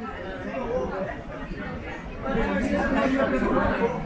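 Spectators chatting by the pitch: several voices talking at once, louder from about halfway through.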